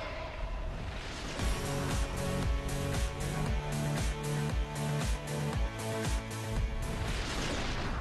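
Background music with a steady beat, fading near the end.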